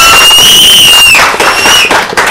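An audience clapping, with a loud, shrill whistle held over the applause that breaks off just past a second in and returns briefly near the end.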